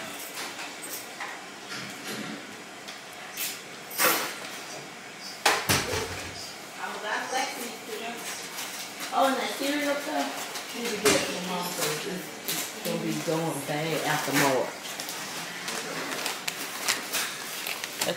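Indistinct talking in the background, with a few sharp knocks and clatters of things being handled in a kitchen, the loudest about four and six seconds in.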